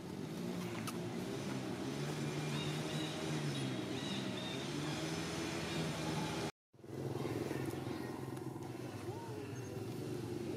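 A motor vehicle engine running with a steady, low hum. The sound cuts out completely for a moment about two-thirds of the way through.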